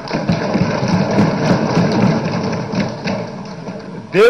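Many legislators thumping their desks in the assembly chamber: a loud, dense clatter of rapid blows that eases slightly near the end.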